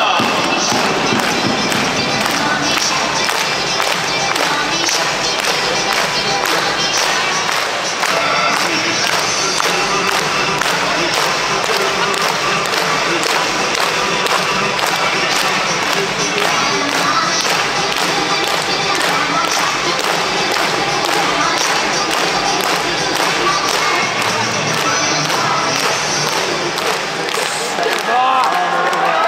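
A Japanese pro baseball cheering section: a large crowd of fans chanting and singing a batter's cheer song in unison to a steady, regular drumbeat, with brass playing along. It runs on without a break.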